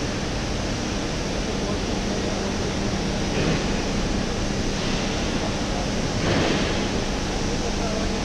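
Single-chain pusher conveyor and its drive motor running, a steady noise with a constant low hum. Two brief louder rushes of noise come about three and six seconds in.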